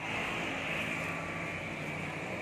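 Steady engine noise of a motor vehicle running nearby, a continuous hum and hiss.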